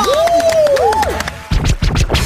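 DJ turntable scratching over a distorted, remixed song. A swooping "ooh" sounds in the first second, then a heavy beat with scratch strokes comes in about a second and a half in.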